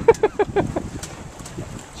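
A man laughing: a quick run of about six short 'ha's in the first second. After that comes wind noise on the microphone, with a few faint clicks.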